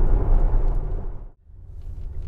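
Steady low road and tyre rumble of an electric Tesla Model S cruising at about 70 km/h. About a second and a half in it fades out almost to silence, then comes back quieter.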